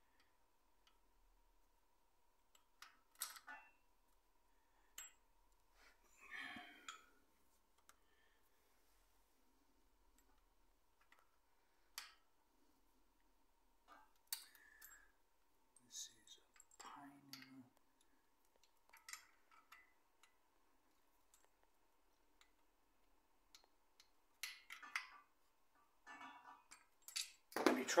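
Sparse, quiet clicks and clinks of a steel timing chain and its sprocket being handled and worked into place by hand, with soft rustles between them. The clicks come a little closer together and louder near the end.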